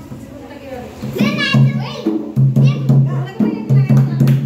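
Dholak drum beaten in a steady rhythm under an amplified singing voice. After a quieter first second, the drum strokes come back in about a second in.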